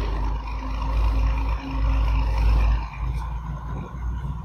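Low engine rumble of a passing motor vehicle, steady for about three seconds and then easing off, with a faint hum over it in the first half.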